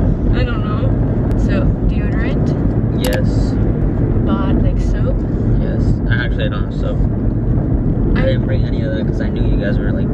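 Steady low rumble of road and engine noise inside a moving car's cabin, with a woman's voice talking over it at intervals.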